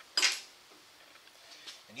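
A single short metallic clank from the sheet-metal brake about a quarter second in, as the bend of the aluminium part begins, followed by near-quiet with a faint tick.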